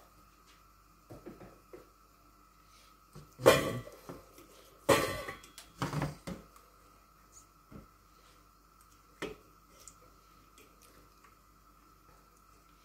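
Pork chops being turned by hand in a stainless steel bowl of soy-sauce marinade: wet squelching of meat in liquid and light knocks against the bowl, with a few louder sudden noises around the middle. A faint steady high hum runs underneath.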